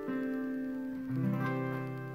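Acoustic guitar ringing out the final chord of a song, with a low bass note plucked about a second in, the notes then slowly fading.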